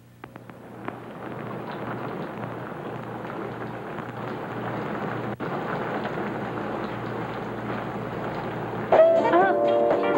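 Steady rain-like hiss fading in over the first couple of seconds, cutting out for an instant about five seconds in. About nine seconds in, louder music with a singing voice comes in over it.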